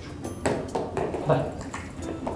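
A man's voice calling a dog in short, bright calls, with faint light clicks and taps under it.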